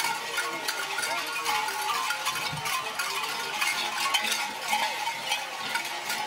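Many metal bells jangling and clanking unevenly, as worn by costumed dancers on the move, over a steady crowd hubbub.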